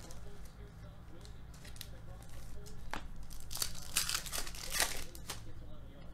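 Foil trading card pack being torn open and its wrapper crinkled: a scatter of short rips and crinkles, busiest about four seconds in.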